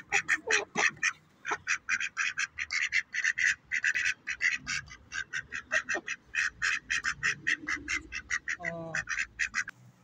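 Caged birds calling: a fast, continuous run of short, harsh chirps, several a second, that stops shortly before the end. A single lower pitched call breaks in near the end.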